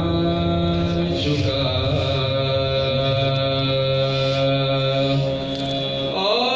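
A man's voice in soz khwani, the melodic recitation of an elegy for Karbala, singing long held notes. The line steps down in pitch about a second in and holds one note for several seconds.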